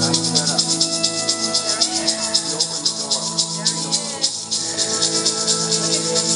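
A hand rattle shaken in a fast, even rhythm, about seven shakes a second, over sustained drone notes.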